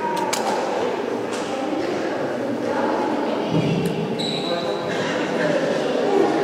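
Sports hall ambience between quarters of a basketball game: many people talking in a reverberant gym, with basketballs bouncing and a few sharp knocks near the start.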